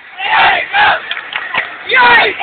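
Ice hockey crowd yelling during a fight on the ice, with loud shouts from spectators close to the phone: two big shouts in the first second, smaller calls after, and more near the end.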